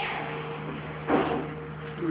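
A single knock about a second in, over a steady low hum.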